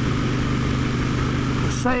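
Motorcycle engine running at a steady pitch on the move, with a steady rushing noise over it.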